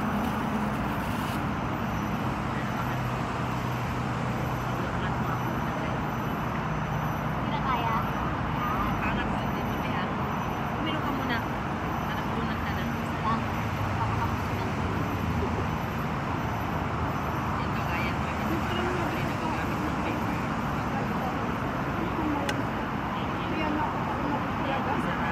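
Steady hum of city traffic with the faint chatter of people talking close by.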